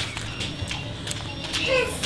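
Footsteps in sandals on wet concrete, a few short clicks, with a child's brief vocal sound about one and a half seconds in.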